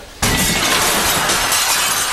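Glass shattering: a sudden, loud crash of breaking glassware starts about a quarter second in and keeps going without a break.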